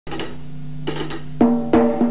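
Drum kit played at a rock band's soundcheck over a steady low amplified tone: a few light taps, then loud ringing strokes from about one and a half seconds in.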